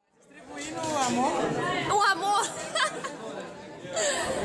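Several people chatting at once in a room, no single voice clear; the voices fade in after a brief silence at the start.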